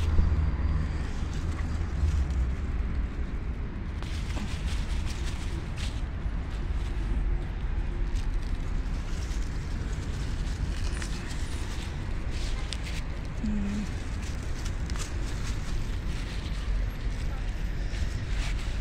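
Low rumble of wind and handling on the phone's microphone, with crackling rustles of freshly picked curly lettuce leaves and a plastic bag being handled, thickest from about four seconds in.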